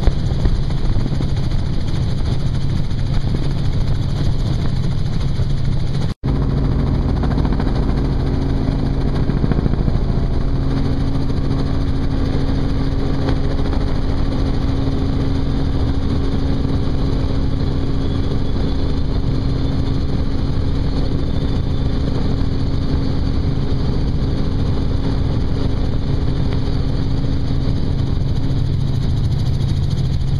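Helicopter cabin noise with the doors off: a steady, loud drone of rotor and turbine engine. It drops out for an instant about six seconds in, then resumes with an added steady hum.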